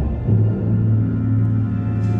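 Chamber orchestra playing a contemporary piece live: a loud low entry that settles, about a quarter second in, into a steady held low note with overtones above it.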